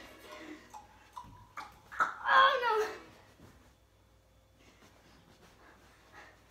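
A short wordless vocal cry, falling in pitch, about two seconds in, after a few light knocks.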